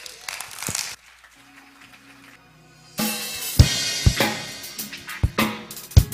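Drum kit played live: a few light strokes and a cymbal wash, a short lull, then a groove starting about halfway, with bass drum, snare and cymbals.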